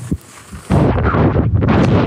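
Wind buffeting a POV-mounted GoPro HERO10's microphone on a skier: after a couple of brief knocks, a sudden loud, low rumble starts less than a second in and holds steady.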